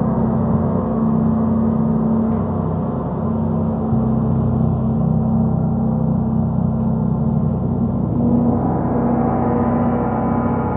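Large suspended gongs played continuously, their ringing tones overlapping in a dense, steady wash. A new deeper tone swells in about four seconds in, and the higher overtones brighten near the end.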